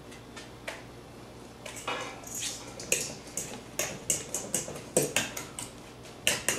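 Utensils clinking and tapping against a bowl while guacamole is being mixed: after a quiet second or so, an irregular run of sharp clicks, several a second, that stops near the end.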